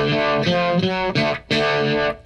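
Stratocaster-style electric guitar played through a Univibe pedal, strumming chords. The chords ring on, with fresh strokes about a second in and again about half a second later.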